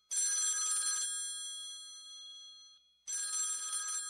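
Old rotary telephone's bell ringing twice for an incoming call: a ring of about a second whose tone dies away slowly, then a second ring about three seconds in.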